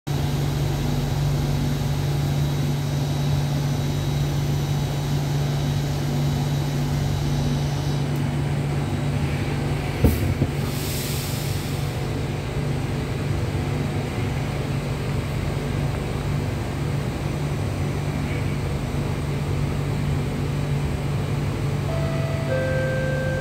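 Steady low hum inside a stationary Alstom Metropolis C830 metro car standing with its doors open, with a faint high whine that stops about eight seconds in. About ten seconds in comes a sharp knock followed by a hiss lasting about two seconds.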